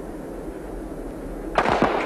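Starter's pistol fired once, about one and a half seconds in, sending the sprinters off the blocks at the start of a 100 m race. A low background murmur comes before it, and the shot rings on briefly after it.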